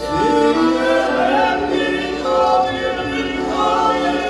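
A group of men and women singing a Polish Christmas carol (kolęda) together. A new phrase begins right at the start after a brief pause for breath.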